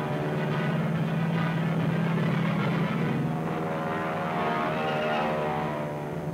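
Steady drone of piston aircraft engines, the sound of fighter planes in a dive, swelling slightly in the middle.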